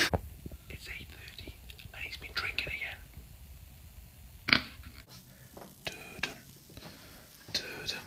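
A man whispering in short, quiet phrases, with one short knock about halfway through.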